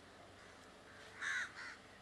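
A bird calling twice in quick succession a little after a second in, the first call louder, over faint outdoor background noise.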